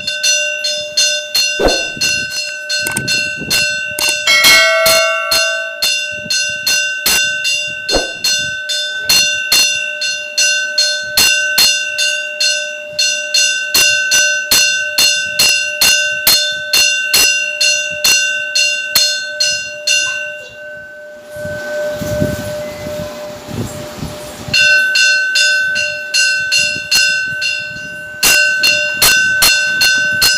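Metal temple bell rung in a fast, steady, even stream of strokes during the puja. The ringing breaks off for a few seconds about two-thirds of the way through, then starts again.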